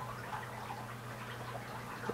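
Quiet room tone: a low steady hum with a few faint, light ticks.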